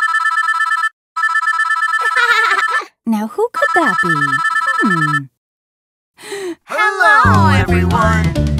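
Electronic telephone ringing in three bursts, a fast warbling two-tone ring, with cartoon character voices over the later rings. Children's music starts near the end.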